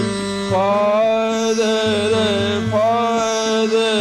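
A man singing a slow devotional song in long held notes, sliding up into each new phrase, over a steady drone accompaniment.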